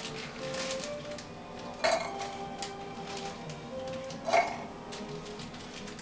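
Fresh cranberries dropping into a stainless steel cocktail shaker tin, with two louder clinks about two seconds and four and a half seconds in and a few faint ticks between, over background music.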